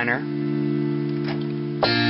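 Casio electronic keyboard playing a D minor chord held steadily. A new chord is struck sharply near the end.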